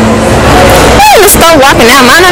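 A woman's voice, high and animated, starting about a second in over a loud, steady background noise.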